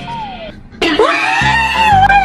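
A woman's long, loud scream of dismay, starting about a second in and held, over background music with a steady bass.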